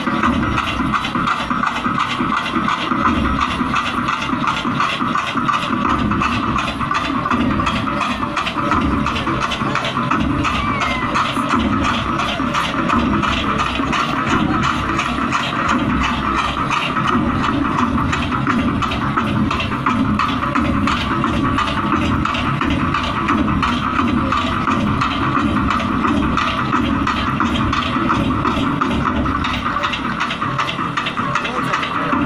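A troupe of dollu drummers beating large barrel drums with sticks: dense, continuous drumming with closely packed strokes.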